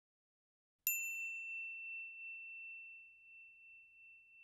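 Silence, then a single bright ding sound effect about a second in: one clear high bell-like tone that rings out and fades slowly.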